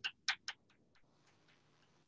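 Chalk tapping and clicking on a blackboard during writing: a quick run of short, sharp taps in the first second that thin out and fade.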